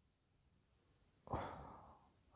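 Near silence, then about a second and a quarter in a short audible breath from the narrator that fades out within half a second.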